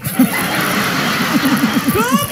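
Audience laughter with applause: a steady crowd wash, with a run of quick laughs near the end.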